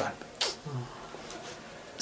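A pause in conversation: a man makes one short, sharp breathy sound about half a second in, followed by a brief low murmur, then quiet room tone.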